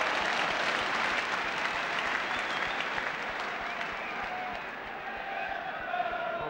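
Football stadium crowd applauding and cheering a goalkeeper's save. The noise is loudest at first and slowly dies down.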